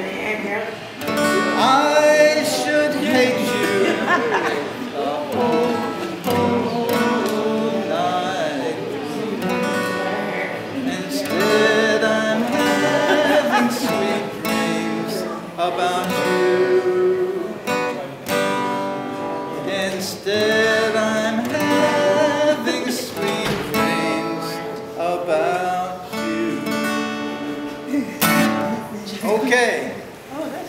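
A man singing a slow song while strumming an acoustic guitar.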